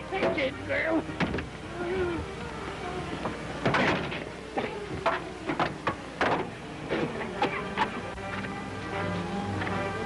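Orchestral chase music from a 1940s film soundtrack, with a run of sharp, irregular cracks through the middle; the music swells near the end.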